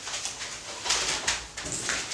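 Rustling of a paper bag and a handbag being carried and set down, in a few short bursts, the loudest about one second in and near the end.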